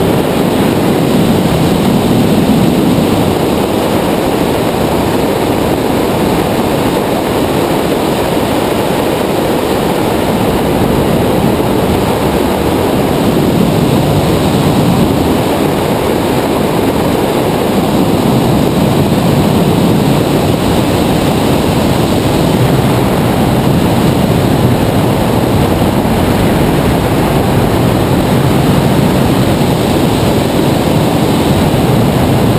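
Loud, steady rush of wind over the microphone of a camera mounted on a tandem hang glider in flight, swelling slightly now and then.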